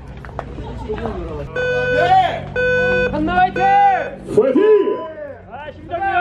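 Electronic race-start timer counting down: two steady beeps about a second apart, then a higher-pitched beep a couple of seconds later that signals a group of riders to go. Voices talk over it.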